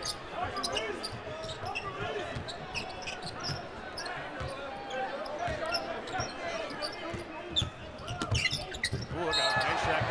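Basketball game sounds in an arena: a basketball being dribbled and sneakers squeaking on the hardwood court, over a steady crowd murmur. About nine seconds in, two players collide and go down, and the crowd noise swells.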